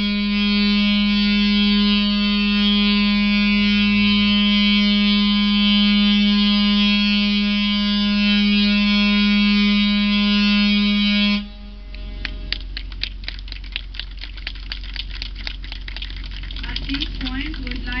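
Ship's horn sounding one long, steady blast that cuts off abruptly about eleven seconds in, followed by scattered hand clapping.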